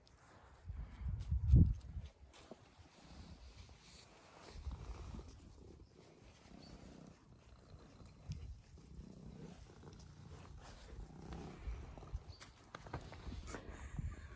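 Domestic cat purring faintly while being stroked, with a brief low rumble between one and two seconds in.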